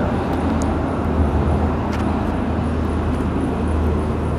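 Steady low rumble and hiss of background noise picked up through the lecturer's microphone, with a few faint clicks.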